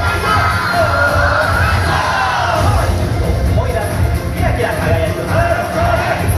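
Upbeat yosakoi dance music with a steady pulsing bass beat and a singing voice, played loudly through outdoor PA speakers. Group shouts rise over the music.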